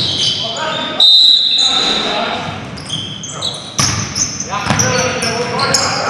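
Live basketball game sound in a gym: sneakers squeaking on the hardwood, the ball bouncing, and players' voices echoing in the hall. The loudest moment is a held high squeal about a second in.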